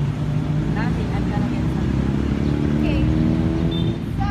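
A motor vehicle's engine running close by: a steady low hum whose pitch creeps slightly upward over the second half. Faint voices are heard under it.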